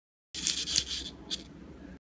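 A few light metallic clinks and rattles, loudest in the first second and fading, with a thin high-pitched whine under them.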